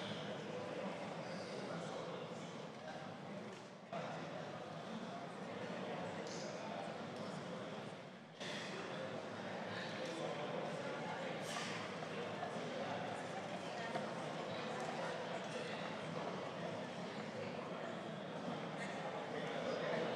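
Hubbub of many people talking at once in a large hall, a steady murmur with no single voice standing out. Twice, near four seconds in and again after eight, the murmur drops briefly and then jumps back up suddenly.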